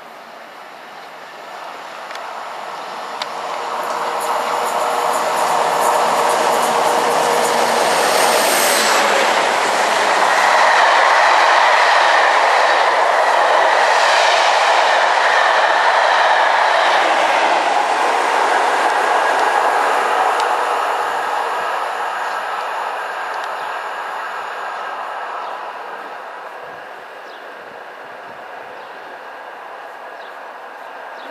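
Passenger train passing close at speed: the rush of wheels on rails builds over a few seconds, stays loud for about fifteen seconds as the coaches go by, then fades away.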